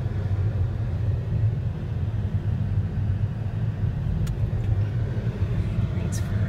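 Steady low rumble of a car driving, with road and engine noise heard inside the cabin. A single brief tick comes about four seconds in.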